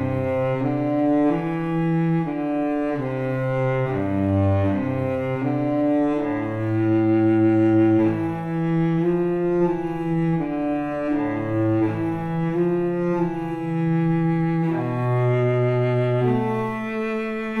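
Sampled Stradivari cello from Native Instruments' Cremona Quartet library played from a keyboard: a slow bowed passage of sustained notes, often several at once, changing every second or so. It has a warm, rich tone.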